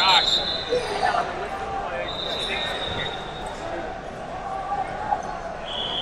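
Referee whistles in a large arena over the chatter of a crowd: long, steady blasts, one about two seconds in and another starting near the end.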